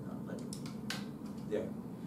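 A few sharp clicks at a laptop, two close together about half a second in and a louder one just before one second, as the slideshow is advanced to the next slide, over a steady low room hum.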